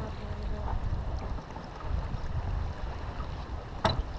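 Wind buffeting the microphone over water rushing past the hull of a sailboat under way, a steady low rumble. A brief sharp sound stands out near the end.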